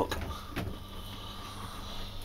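Steady low electrical hum of the running chest-freezer keg fridge, with a single sharp click about half a second in.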